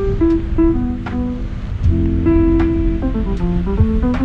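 Background music: a plucked guitar melody of held notes over a bass line, with light percussion ticks about every 0.8 seconds.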